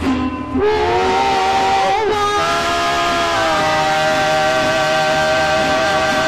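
Women singing a Spanish-language gospel song into handheld microphones, amplified, holding long sustained notes with a slight vibrato; the pitch shifts about half a second in and again about two seconds in, then holds steady.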